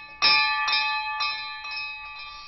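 Warning bell on an antique horse-drawn fire apparatus, struck about four times, roughly twice a second, and left ringing: the bell that announced the engine was coming.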